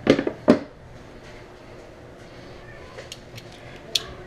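Hard plastic engine cover being handled and set down: two sharp knocks just after the start, then a few light clicks near the end.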